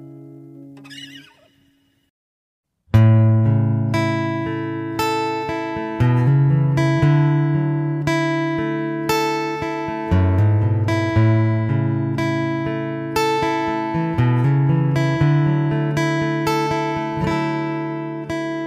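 The last held notes of one song fade out, followed by a second and a half of dead silence. About three seconds in, a fingerpicked and strummed acoustic guitar begins the next song's intro, with fresh strokes roughly once a second and no voice yet.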